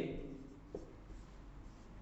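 Faint scratching of a marker being written across a whiteboard.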